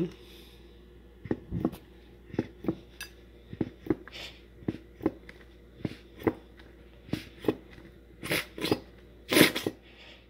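Plastic squeeze bottle of ranch dressing squeezed over a bun: short crackling clicks of the plastic, often in pairs, repeated every second or so, then louder sputtering squirts near the end as the dressing comes out.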